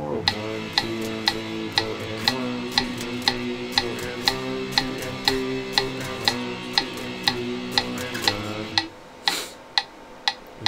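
Electric guitar playing power chords A5, B5, C5, B5 and back to A5, one chord about every two seconds, over a metronome clicking steadily about twice a second (120 beats per minute). The guitar stops about nine seconds in and the metronome clicks on alone.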